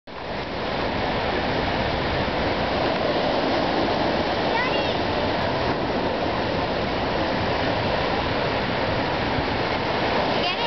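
Steady rushing noise of surf washing on the beach, even and unbroken, with a faint voice briefly about halfway through.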